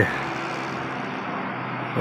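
Steady, even engine noise from motor vehicles passing along a road some way off, with no sharp events.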